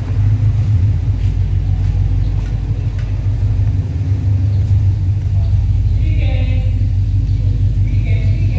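Toyota 86's flat-four engine idling, a steady low rumble.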